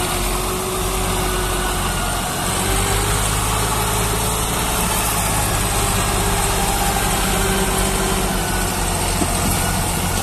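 Massey Ferguson 260 Turbo tractor's diesel engine running steadily under load while pulling a loaded trailer through sand.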